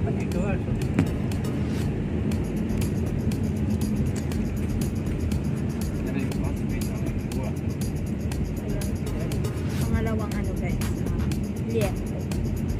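Steady low rumble inside a car cabin, with frequent irregular clicks and smacks of close-up chewing as someone eats.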